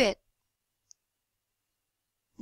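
The end of a narrator's spoken word just after the start, then silence broken only by one faint, short high tick about a second in.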